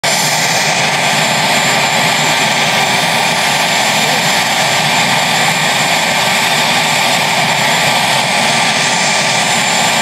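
Sikorsky VH-3D Sea King helicopter on the ground with its twin turboshaft engines running and main rotor turning: a loud, steady turbine whine and rotor noise that holds even throughout, mixed with heavy rain.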